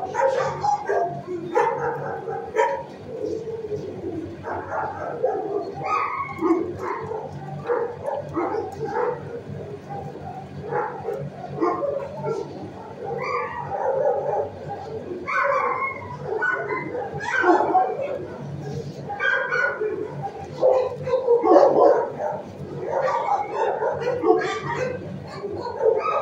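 Several dogs barking and yipping in a shelter kennel block, a dense, unbroken jumble of calls over a steady low hum.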